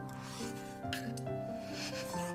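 Background music with a melody of held notes, over which come about three short, noisy slurps as soup is sipped from a bowl, one at the start, one near the middle and one near the end.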